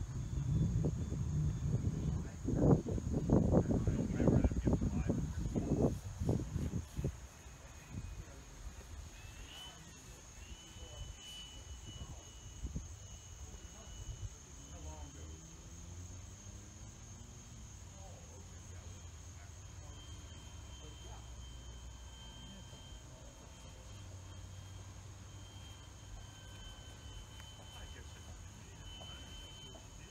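Gusty wind buffeting the microphone in loud low rumbles for about the first seven seconds, then dying away. The rest is quiet, with a faint thin whine that wavers in pitch from the electric motor and propeller of the radio-controlled plane flying overhead.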